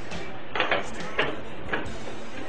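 A few light metallic clicks and scrapes as a metal electrode plate is slid down over the bolts onto the gasket stack of a hydrogen dry cell.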